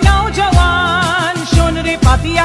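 A Bengali song: a high sung voice holding wavering notes over a steady beat, with a low drum about twice a second.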